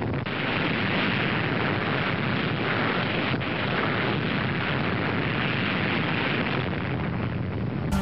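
Long, steady roar of a nuclear bomb explosion from an old test-film soundtrack, dull with no high treble.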